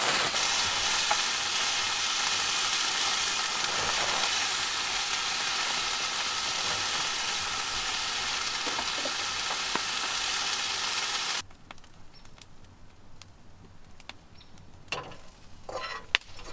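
Rain falling steadily on a canvas camper-trailer awning, an even hiss that cuts off abruptly about eleven seconds in, leaving a much quieter stretch with a few faint clicks.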